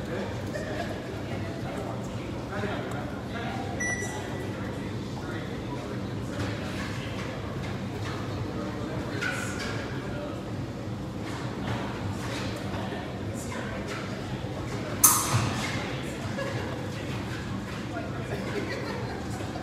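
Steady low hum of a large fencing hall, with faint scuffs of fencers' footwork. About fifteen seconds in comes one sharp impact that rings briefly.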